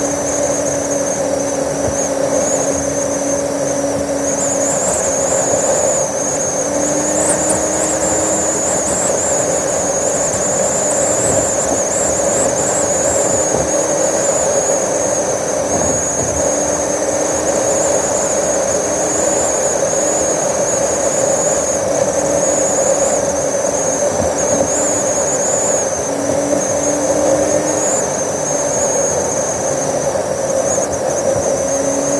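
A car's engine and road noise heard as a steady whirring drone. A thin high whine wavers in pitch above it, and a lower hum drops out and returns every few seconds.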